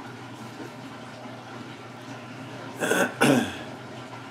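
A man clears his throat with two short coughs about three seconds in, after a couple of seconds of faint steady background noise.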